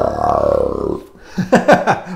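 A man's voice doing a growl, imitating a cartoon monster: one long rough growl of about a second, followed by a few short breathy sounds.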